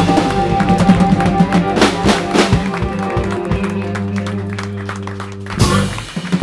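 Live electric blues band (guitars, bass, keyboard, drums, harmonica) playing the end of a twelve-bar blues: busy drum strokes and cymbals over the band, then a final chord held from about halfway through, and a last accented hit near the end.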